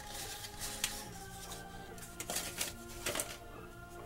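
Quiet background music with a steady melody, broken by a few light clicks and rustles of paper cards and a plastic egg being handled.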